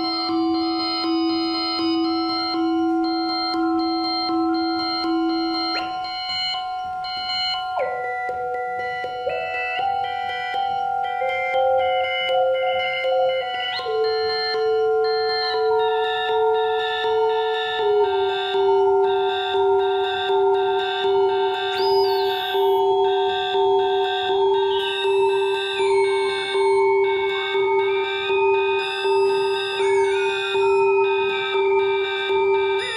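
8-bit synthesizer playing layered, sustained electronic tones that step to new pitches every few seconds. From about halfway through, a steady pulsing rhythm joins the held notes.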